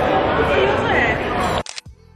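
Group of voices chattering and laughing in a busy eatery, cut off about a second and a half in by a camera shutter click.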